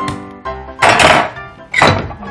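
Background music with steady notes, cut by two loud clattering knocks of cookware on a gas stove, the first about a second in and the second near the end.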